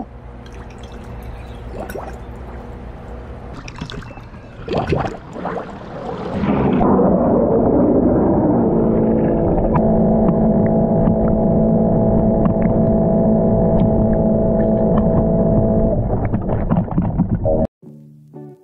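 Water sloshing and gurgling, then about six and a half seconds in a louder steady hum with several held tones sets in: a cordless robotic pool cleaner's pump and drive motors running as it churns the water. The sound cuts off suddenly near the end.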